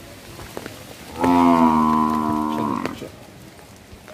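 A cow mooing once: one long call of about a second and a half, starting a little over a second in and dipping slightly in pitch as it ends.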